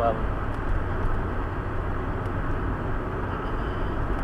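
A car on the move: steady low rumble of engine and road noise.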